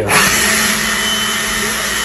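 Handheld leaf blower switched on and blowing at full power: a loud, steady rush of air with a low hum under it, starting abruptly.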